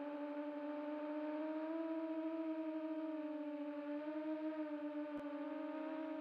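A sustained electronic synthesizer tone, the opening of a music track, held on one low note with its overtones and wavering slightly in pitch. A short faint click comes about five seconds in.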